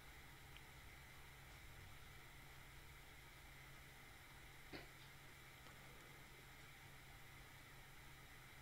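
Near silence: faint room tone with a low steady hum, and one faint click about halfway through.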